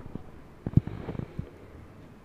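Faint steady background hiss with a few soft, low thumps a little before the middle, the strongest about three-quarters of a second in.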